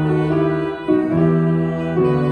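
A small instrumental ensemble playing held chords that change together about once a second, as it follows a student conductor's beat.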